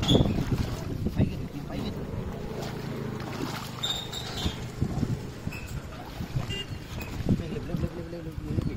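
Muddy water sloshing and splashing as a cloth net is dragged and lifted through a shallow puddle, loudest at the very start, over a steady low rumble of wind on the microphone.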